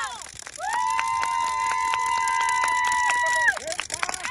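A high-pitched voice holding one long, steady shout for about three seconds, starting just under a second in.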